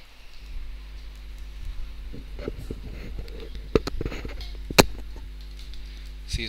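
Computer keyboard keystrokes: scattered clicks, two of them sharper and louder about four and five seconds in, over a steady low electrical hum.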